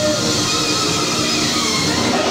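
A live church band playing a steady, loud worship song, with guitar and keyboard.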